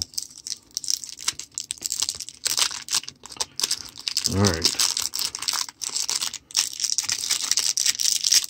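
Clear plastic wrapper on a pack of baseball cards crinkling and tearing as hands unwrap it, a busy crackling rustle with many small clicks.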